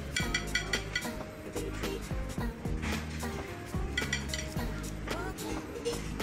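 Background music over clinks of serving tongs against plates and serving trays at a buffet counter, with little ringing clusters of clinks near the start and again about four seconds in.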